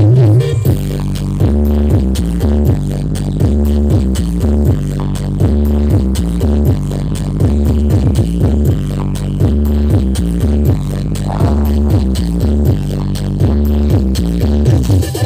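Electronic dance music with heavy bass and a steady beat, played loud through a large outdoor sound system of stacked horn-loaded speaker cabinets during a sound check.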